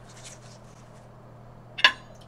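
Quiet handling of a pizza in its cardboard delivery box and onto a plate: faint scraping and rustling at first, then one sharp click near the end.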